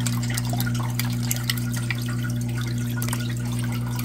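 Aquarium cichlids nibbling flake food at the water surface: scattered small clicks and pops over a steady low hum.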